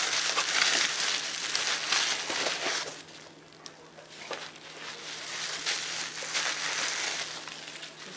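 Plastic bubble wrap crinkling and crackling as a wrapped bundle is lifted out of a cardboard box and handled. The sound eases off about three seconds in, then the crinkling builds up again.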